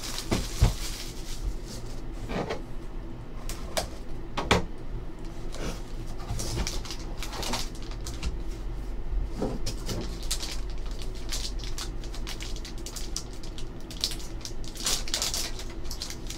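Cardboard card boxes and packaging being handled by hand: scattered taps, scrapes and rustles, with a denser crinkling of a foil wrapper being pulled open near the end, over a steady low hum.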